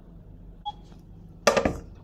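Quiet room tone, then a single sharp knock about one and a half seconds in, from kitchen work on a wooden cutting board.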